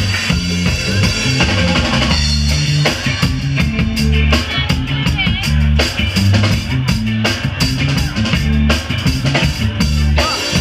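Full band playing live, with a steady repeating bass line and drum kit hits, along with electric guitars and keyboards.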